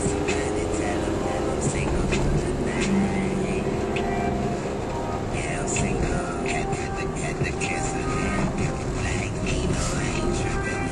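Music with a singing voice playing on a car radio, heard inside a moving car's cabin over steady road and engine noise.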